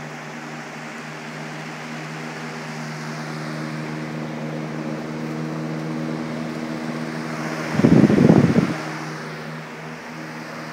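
Lasko electric fans running: a steady motor hum with a few low steady tones under the rush of moving air. About eight seconds in, a loud low rumble lasts about a second.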